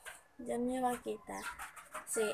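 A woman's voice: a long drawn-out "and" about half a second in, then a few short syllables.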